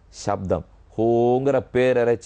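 Speech only: a man talking in Tamil, with a short pause about half a second in.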